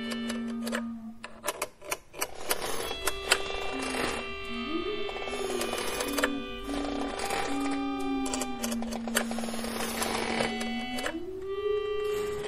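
Experimental electronic music: a held tone that steps and slides up and down in pitch, over a dense layer of rapid clicks and glitchy crackle. The sound thins out briefly about a second and a half in, then fills back up.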